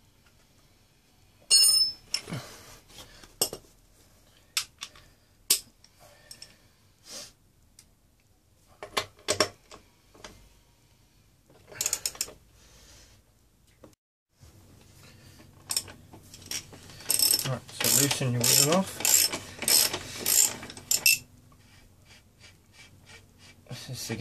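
Socket ratchet clicking and metal tools clinking as the chain adjuster bolts on a motorcycle swingarm are loosened. There is a sharp ringing clink about a second and a half in, and a fast run of ratchet clicks lasting about four seconds near the end.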